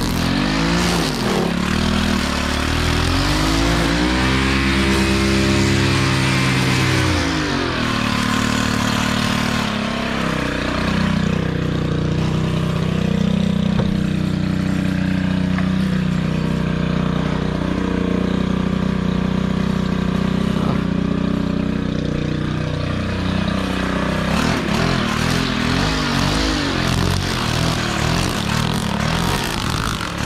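Gas string trimmer running while its line cuts grass along a fence line. The engine speed swells and drops about four to eight seconds in, then holds high and steady for most of the rest, easing off near the end.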